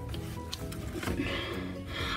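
Soft background music with steady sustained tones, and a few faint ticks.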